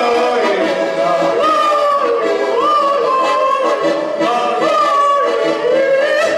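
A man singing a folk song into a microphone, accompanied by an accordion, his voice sliding between long held notes over the accordion's steady chords.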